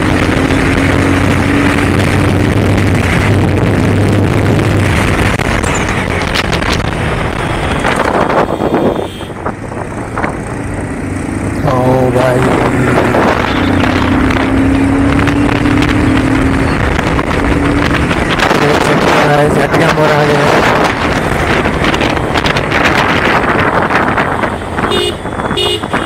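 Bajaj Pulsar 220F's single-cylinder engine and wind rush heard from the rider's seat while riding at road speed, with a steady engine hum. The sound drops briefly about nine seconds in as the throttle is eased, then the engine pulls again with its note slowly rising.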